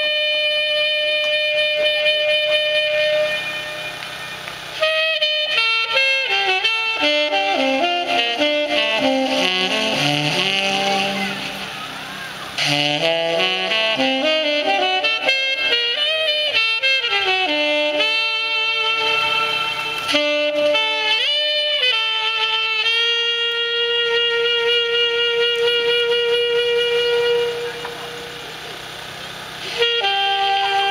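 Tenor saxophone playing a melody live: a held note at the start, then fast runs of notes climbing and falling through the middle, and long sustained notes toward the end.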